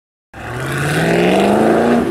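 A car engine revving, starting about a third of a second in, its pitch rising steadily to a peak near the end.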